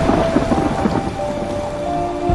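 Heavy rain with a deep low rumble, a dense hiss running steadily, with faint sustained musical notes underneath.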